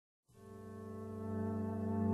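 Opening of a song: a sustained low chord fades in about a quarter second in and swells steadily louder.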